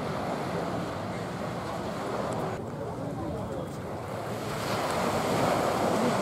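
Wind blowing across the camera microphone with sea noise beneath, a steady rushing that grows louder near the end.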